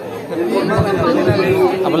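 People talking over the background chatter of a crowd.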